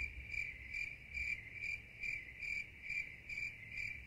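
A high chirping that pulses evenly about twice a second, like a cricket, over a low hum.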